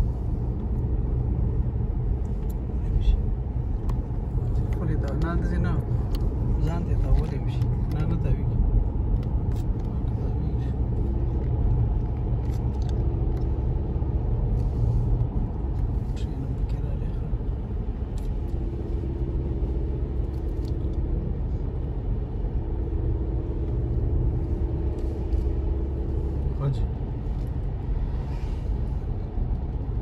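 Steady low road and engine rumble inside a moving car's cabin, its tyres running on a wet road, with faint talk now and then.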